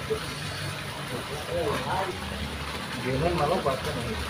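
Faint background voices of people talking, over a low steady rumble.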